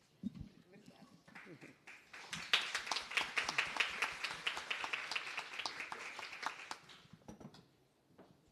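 Audience applauding. The applause starts about two seconds in, carries on as a dense run of claps and dies away near the end.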